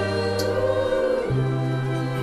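Music: orchestral accompaniment with a choir holding sustained wordless notes; the bass moves to a new note a little past halfway.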